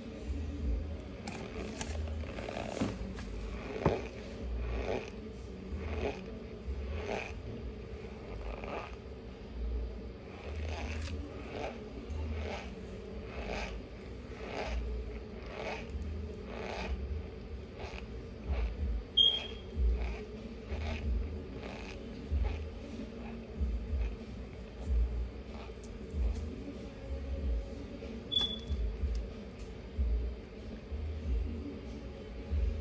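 A person chewing a mouthful of dry Maizena cornstarch: a soft, crunchy chew repeating about one and a half times a second. The starch is not squeaky.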